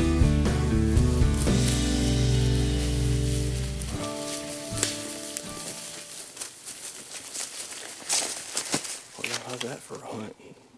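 Background music that cuts off suddenly about four seconds in, followed by close crackling and rustling of dry leaves and clothing moving against the microphone.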